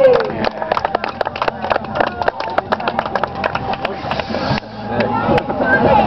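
Dry hay tinder and small twigs crackling and snapping in rapid, irregular clicks, several a second, with a short rushing hiss about four seconds in that stops abruptly.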